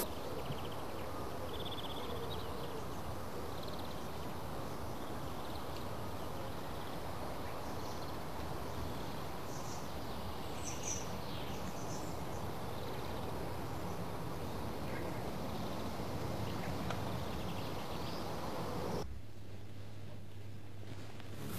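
Steady background hiss with a few faint, short high chirps scattered through it; the hiss drops to a quieter background about a second before the end.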